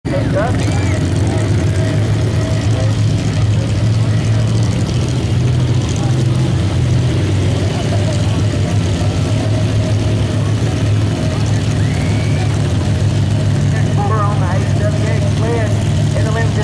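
Engines idling steadily at a truck pull: a pickup truck hitched to a pulling sled, waiting at the line. Voices can be heard over the engine noise near the end.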